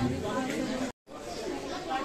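Indistinct chatter of several people's voices, broken by a brief dead-silent gap about halfway through before the chatter picks up again.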